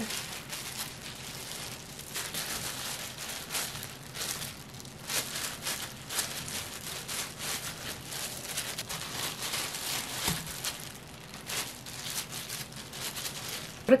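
Disposable plastic gloves and the plastic wrap covering the cutting board crinkling in an irregular run of soft crackles as gloved hands shape and press sticky rice-cake dough into patties.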